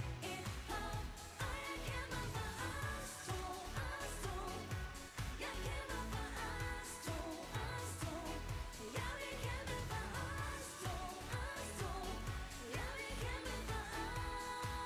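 Female pop vocalists singing live over a dance-pop backing track with a steady beat and strong bass.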